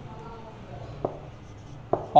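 Marker pen writing on a whiteboard, with two light sharp ticks of the pen tip against the board, about a second in and just before the end.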